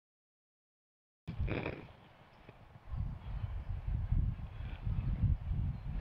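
Dead silence for about the first second, then a brief sound, then wind buffeting the microphone outdoors: an uneven low rumble that grows stronger from about three seconds in.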